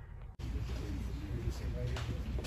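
A near-quiet hush that cuts off abruptly about half a second in to the room noise of a showroom gathering recorded on a phone: a steady low hum of the space with faint, indistinct murmuring voices.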